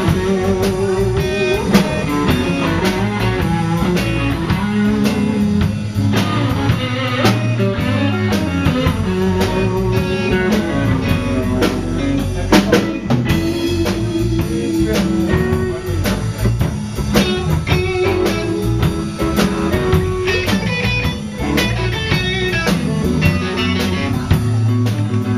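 Live blues-rock band playing an instrumental passage: electric guitar, bass guitar and a drum kit with cymbals, with a steady beat of drum strikes.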